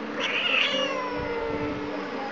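Domestic cat giving one long, drawn-out meow that rises and then falls in pitch, trailing off after about a second.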